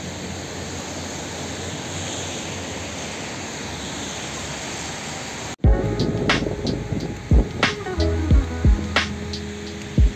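A steady hiss of falling water from rain and running fountains for about the first half. It cuts off suddenly and gives way to background music with deep, heavy beats.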